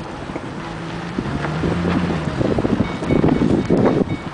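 Wind buffeting the camera microphone: an uneven low rumble that gets stronger and gustier in the second half.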